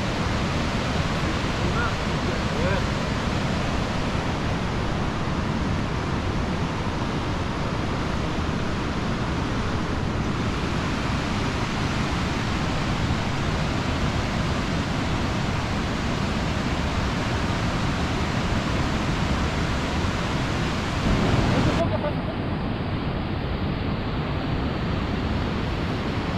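Steady rush of surf breaking on the beach and rocks below, mixed with wind on the microphone. About 22 seconds in the sound suddenly turns duller.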